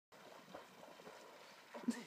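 Faint lakeside ambience: soft, irregular lapping of calm loch water at the rocky shore. A voice starts, laughing, near the end.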